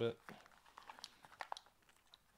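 Faint scattered clicks and rustling from a small black leather neck pouch being handled while its strap is adjusted to hang lower.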